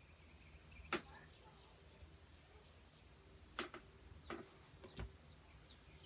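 Near silence: room tone with a few faint, short clicks, one about a second in and three more in the second half.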